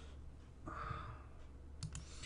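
A couple of quick computer mouse clicks near the end, after a soft rustle or breath about two-thirds of a second in.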